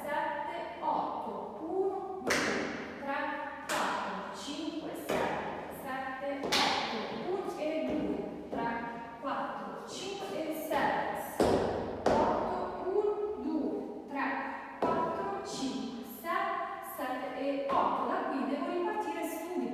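A voice over regular sharp thuds that come about once every second and a half, each with a short ringing tail.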